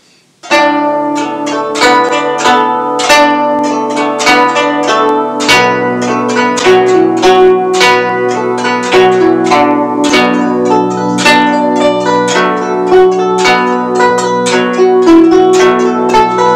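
Guzheng playing a lively beginner's tune at a moderately fast tempo, starting about half a second in: the right hand plucks the melody with finger picks while the left hand pinches two strings together (xiao cuo) for low accompanying notes, each plucked note ringing on.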